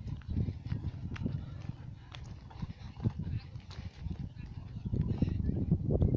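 Wind buffeting the microphone in an uneven low rumble, with a few faint sharp clicks.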